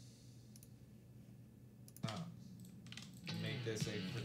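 Computer keyboard typing: a few scattered key clicks in a quiet first half, then quicker typing from about two seconds in.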